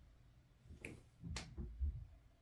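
Two faint, sharp clicks about half a second apart, then a soft low thud near the end.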